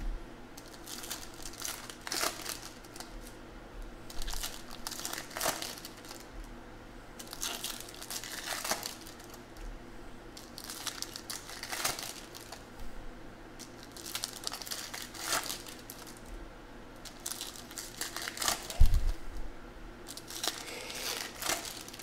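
Foil wrappers of Bowman Chrome baseball card packs being torn open and crinkled, in a run of short crackling rustles a second or two apart, with the cards handled between them. A single low thump comes near the end.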